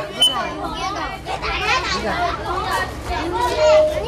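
Young children chattering, many voices overlapping.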